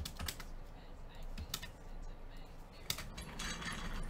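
Computer keyboard keystrokes: a few scattered, irregular clicks, several close together just after the start and single ones later, with a short rustle near the end.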